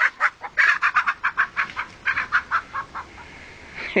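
Chickens squawking and clucking in alarm while a dog chases them: a rapid run of short calls, about six a second, fading out about three seconds in.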